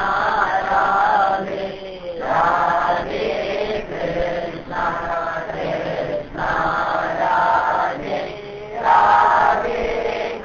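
Devotional chanting: a voice sings a chant in repeated phrases of about two seconds each, with short breaks between them.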